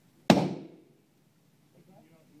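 A single AR-15 rifle shot about a quarter of a second in: one sharp crack with a short reverberant tail off the indoor range's concrete.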